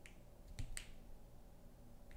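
A few faint, sharp clicks, the sharpest just under a second in: the USB cable being plugged back into a Trezor One hardware wallet while its buttons are held down to enter bootloader mode.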